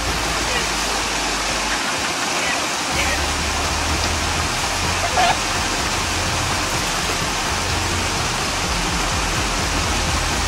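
Water pouring over a small rock waterfall in a steady rush.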